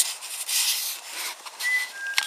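Airy rustling noise, then a short, thin, high whistled note near the end from a bird.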